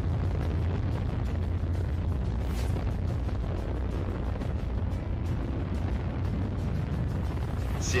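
Soyuz rocket engines in powered ascent, heard from the ground as a steady, deep rumble with no sharp events.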